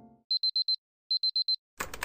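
Digital alarm clock beeping: two quick runs of four short high-pitched beeps, then near the end a short burst of noise with rapid clicks.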